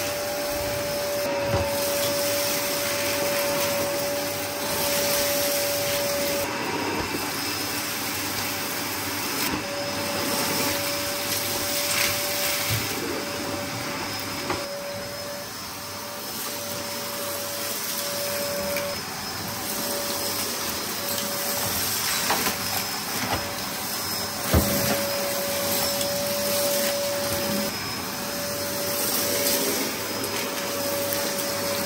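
Dyson DC02 cylinder vacuum cleaner running steadily while its floor head is pushed back and forth over a grit-covered carpet, sucking up the debris. A steady whine comes and goes, and there are a few short knocks of the head against the floor.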